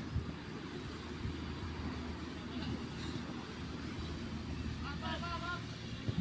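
Steady low outdoor rumble. Brief distant shouting from players comes about five seconds in.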